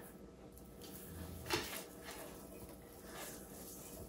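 Faint rustling and handling noise as a wired pip berry garland is wrapped around a wooden post, with one brief, sharper rustle about a second and a half in.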